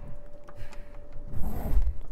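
A sliding screen door being handled and slid along its track, with faint clicks and a low rumble.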